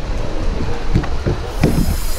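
Wind buffeting a handheld GoPro's microphone as the person holding it lunges and jumps toward a pool: an irregular low rumble in gusts that turns hissier near the end as he leaves the edge.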